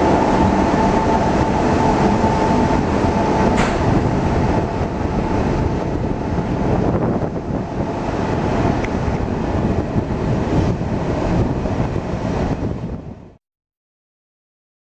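Passenger train rolling slowly through a station, heard from inside a coach with the door open: a steady rumble of wheels on rails, with a faint whine over it for the first few seconds. The sound cuts off suddenly near the end.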